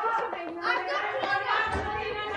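Indistinct voices talking in the background, with a low rumble coming in near the end.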